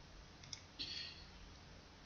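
Faint click of a computer mouse button about half a second in, followed by a brief soft rustle.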